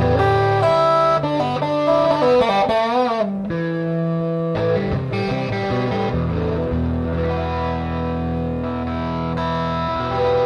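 Electric guitar played through a HeadRush pedalboard with two amp models running in parallel, a clean Princeton and a gained-up '92 Treadplate Modern, blended into one tone. Quick single-note phrases with a wavering bend about three seconds in give way to sustained, ringing chords.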